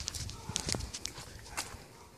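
Faint, irregular footsteps and small knocks of a person walking outdoors while filming.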